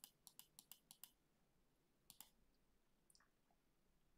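Faint clicks of a computer mouse button, a quick run of about six a second that stops about a second in, then a double click about two seconds in and a single click near three seconds.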